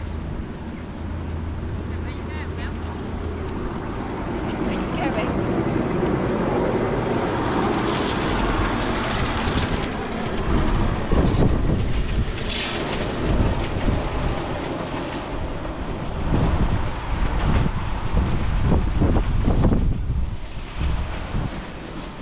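Wind buffeting the microphone in irregular low gusts, growing stronger about halfway through, with people's voices in the background.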